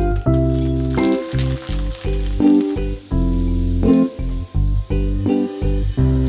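Pellet papads (fryums) sizzling and crackling in hot oil in a steel kadai as they fry and puff up. Background music with a steady run of notes and bass plays throughout, about as loud as the frying.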